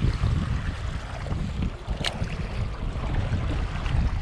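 Strong wind buffeting the microphone in an uneven low rumble, with choppy water lapping at the shore. A single sharp click about two seconds in.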